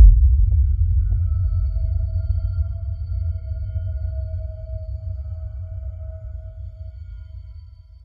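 A deep bass boom hits suddenly and slowly dies away over about eight seconds, with a faint held tone ringing above it: an edited-in transition sound effect.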